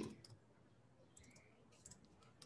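Near silence with a few faint computer keyboard key clicks about a second in, as a word is typed.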